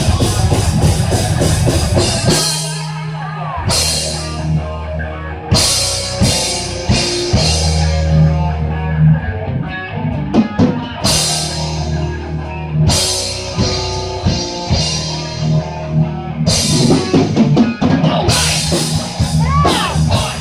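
Live metal band playing loud: distorted guitar and bass riffs over a drum kit, with crash cymbals coming in and out in sections. The low end drops out briefly about two seconds in before the full band hits again.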